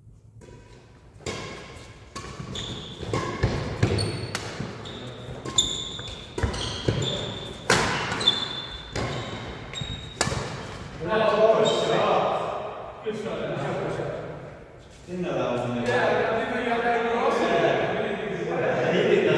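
Badminton rally in a sports hall: rackets strike the shuttlecock at irregular intervals, with short squeaks of shoes on the wooden floor between hits, all echoing in the hall. After about ten seconds the hitting stops and men's voices talk over each other.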